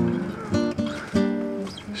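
Acoustic guitar music, a run of plucked notes and chords ringing one after another.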